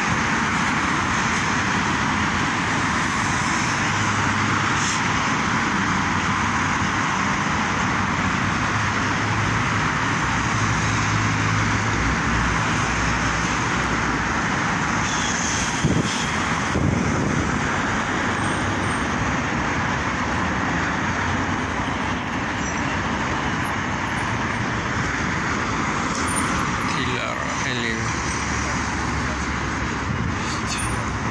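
Steady city street traffic: cars driving past, a continuous wash of engine and tyre noise, with a short louder bump about halfway through.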